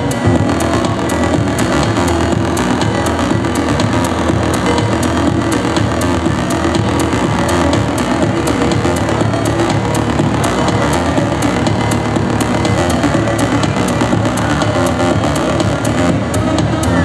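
Loud live electronic music from a DJ setup played through PA speakers, with a steady beat of crisp ticks over a heavy low end.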